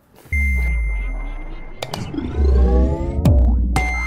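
Electronic outro sting: a deep bass hit with a held high tone about a third of a second in, rising synth sweeps building through the middle, a quick downward swoop, then a fresh held tone near the end.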